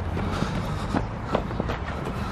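Footsteps on a tarmac path, a few light irregular steps, over a steady low outdoor rumble.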